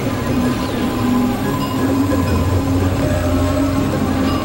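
Experimental electronic noise music on synthesizers: a held low drone and a steady mid tone under a dense, noisy texture crossed by many quick falling pitch glides.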